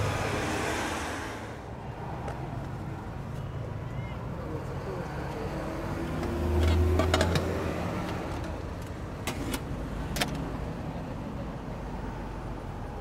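Street ambience with road traffic: a steady background rumble, with a vehicle passing close about six to seven seconds in, the loudest moment. A few sharp clicks or clinks follow about nine to ten seconds in.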